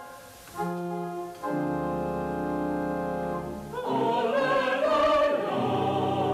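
Church choir anthem with organ: after a brief pause the organ holds steady chords on its own, with a low pedal note, then the choir's voices come back in about four seconds in.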